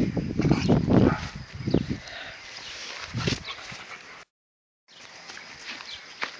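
Puppies growling and barking as they play-fight, in a quick run of short bursts over the first two seconds and another burst about three seconds in. The sound drops out briefly just past four seconds, then returns fainter.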